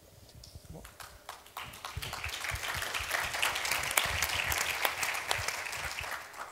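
Audience applauding: a few scattered claps at first, swelling into full applause about two seconds in.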